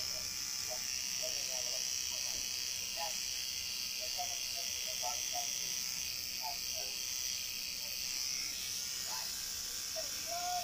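Electric tattoo machine buzzing steadily while tattooing skin.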